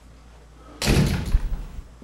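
A door banging, a loud burst of knocks and thuds lasting about a second, starting near the middle.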